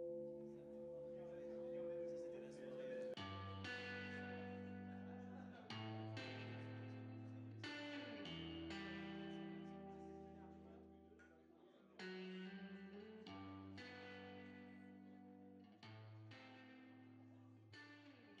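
Quiet closing music: guitar chords struck and left to ring, a new chord every two to three seconds, dying away near the end.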